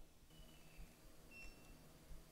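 Near silence: quiet room tone with a faint low hum, and two faint short high-pitched tones, one about half a second in and one about a second and a half in.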